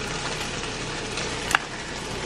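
Chicken strips frying in a pan, a steady sizzle, with one sharp click about one and a half seconds in.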